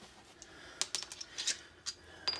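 A handful of light metallic clinks, mostly in the second second, as small metal suspension parts (a spherical bushing and its hardware) are picked up and knock together.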